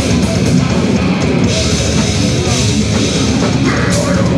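Live death metal band playing loudly: heavy, fast drums with crashing cymbals under distorted electric guitars.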